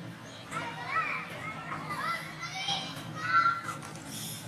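Macaques calling: several high-pitched, wavering coos and squeals that overlap, loudest near the end.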